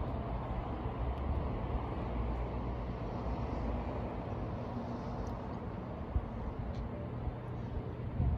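Steady low outdoor rumble with a few faint brief ticks.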